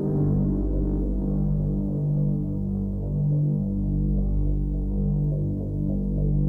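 Film score music: a low, throbbing drone of sustained bass tones that swell and fade about once a second, with no melody on top.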